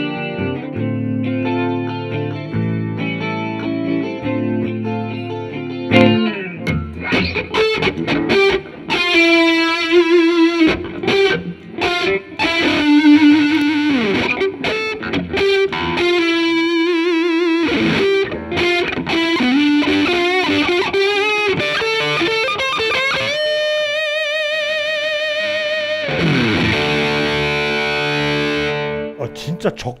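PRS SE Santana Abraxas electric guitar played through a Fender Twin Reverb amplifier and effect pedals. It opens with about six seconds of chords, then moves to a single-note lead with bent notes and vibrato. A long wavering held note comes a little past two-thirds of the way in, and chords close the phrase.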